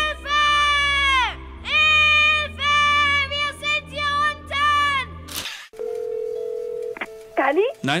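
A loud pitched sound over a low hum, in about six phrases that each slide downward at the end. It is followed, about six seconds in, by a telephone line's steady dial tone for about a second, and near the end by a tone that swoops down and back up.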